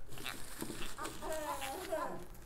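A child's short wavering vocal sound, like a giggle, from about a second in, over faint rustling of crinkly paper strips.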